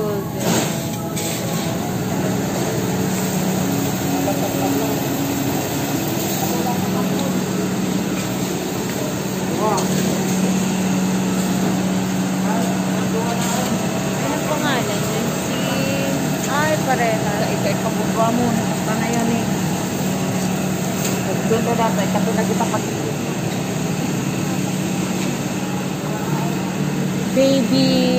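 Supermarket ambience: a steady mechanical hum with a held low tone, and faint voices of other shoppers coming and going.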